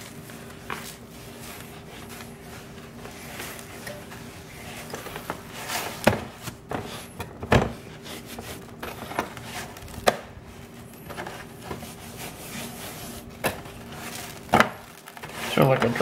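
Hands rubbing a dry cure of salt, sugar and ground spices into a slab of raw pork belly in a baking dish, with a gritty scraping of the rub and several separate knocks as the meat and hands bump the dish. A steady low hum runs underneath.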